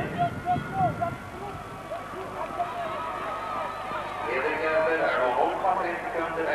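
Indistinct voices over a steady low hum. The voices come in bursts near the start and again from about four seconds in.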